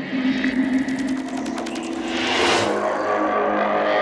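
Electronic sound-design logo sting: a dense run of fast mechanical ticks over held synth tones, growing brighter about two and a half seconds in, leading into a deep bass hit at the very end.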